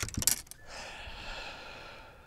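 A handheld lip-grip fish scale being picked up and clipped onto a bass: a quick cluster of sharp clicks and rattles, then a breathy hiss that fades out.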